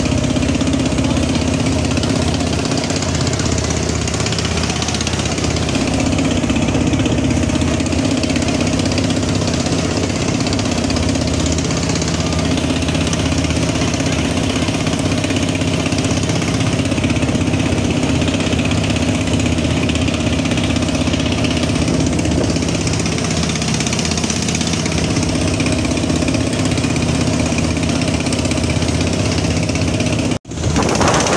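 Engine of a wooden river passenger boat running steadily under way, holding one unchanging pitch throughout.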